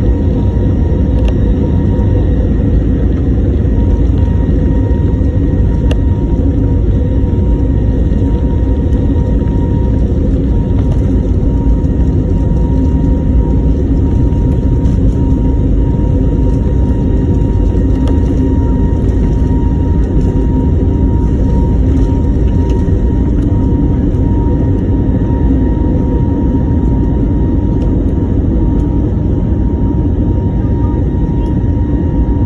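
Airliner cabin during the takeoff roll and lift-off: a loud, steady rumble of the engines at takeoff power and the wheels on the runway, with a thin steady whine over it.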